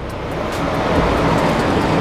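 A steady rushing hiss, like moving air, that builds over the first second and then holds.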